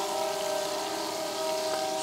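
A train horn holding one long steady chord, over the sizzle of fish frying in hot oil in a cast iron Dutch oven.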